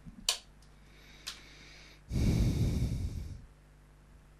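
A man's breath blown out into a close microphone, lasting just over a second and heaviest in the lows, after a sharp mouth or mic click near the start.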